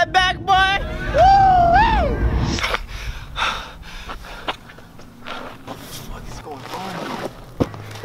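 A man's voice: a few quick vocal sounds, then one long wavering cry that rises and falls, over a low rumble that stops about two and a half seconds in. After that come quieter scattered scuffs and rustles.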